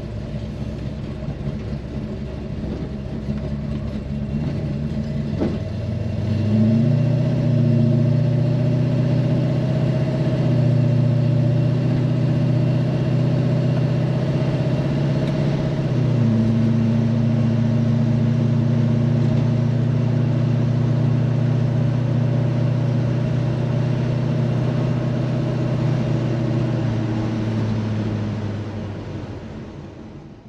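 Superbird's 543-cubic-inch V8 heard from inside the cabin while driving: the engine note steps up about six seconds in as it pulls, shifts briefly around sixteen seconds, holds steady, and fades out near the end.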